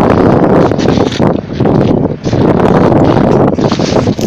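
Loud, gusting wind buffeting the microphone, easing briefly about halfway through, over the running of a six-wheeled all-terrain vehicle being pulled out of broken lake ice.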